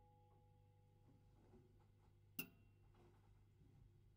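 The last two notes of a paper-strip music box die away in the first second, leaving near silence over a faint low hum. This is broken once, a little past halfway, by a single sharp click with a short high ring.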